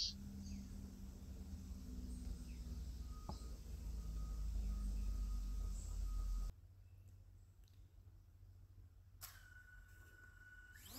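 Faint low outdoor rumble with a few faint high chirps, cutting off suddenly about six and a half seconds in. Near the end comes a steady high-pitched tone lasting about a second and a half.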